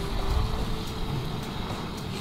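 Wind rumbling on the microphone: a steady low noise that swells about half a second in, with a faint held note of background music.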